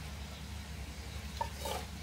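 Faint, steady sizzle of pieces of oxtail frying on the stove, with a couple of soft handling sounds near the end as whole fish are laid into a pot.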